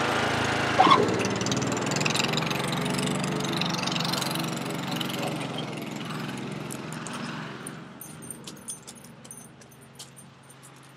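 Riding lawn mower's engine running steadily and fading as the mower drives away. A brief loud call sounds about a second in, and small clicks come near the end.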